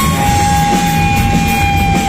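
Electric guitar and a Pearl drum kit playing rock live, without vocals, with one high note held steady over the drumming.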